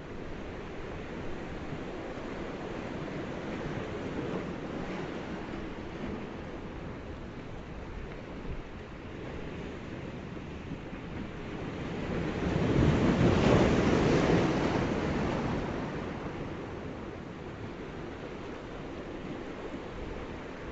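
Steady rushing of surf, swelling into one loud wave surge about two-thirds of the way through before settling back.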